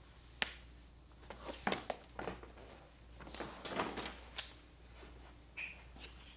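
Rope being pulled and handled: a few soft swishes as it is drawn through, with scattered light clicks and taps.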